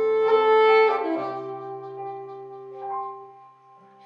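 Alto saxophone playing a slow melody of long held notes over sustained keyboard chords. The phrase fades down near the end.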